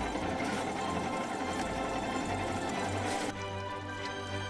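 Background music mixed with a steady machine-like clatter. The clatter stops about three seconds in, and the music carries on alone.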